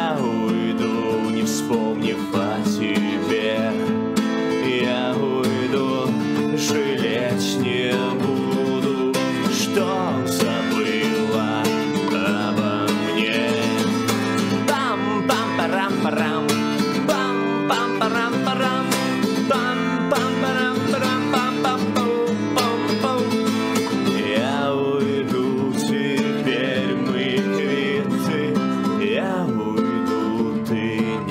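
Acoustic guitar strummed in a steady rhythm, with a man singing along to it.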